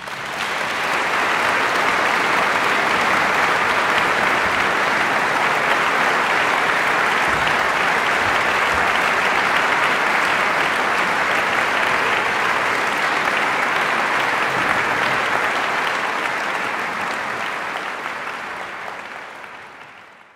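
A large concert audience applauding steadily, fading out near the end.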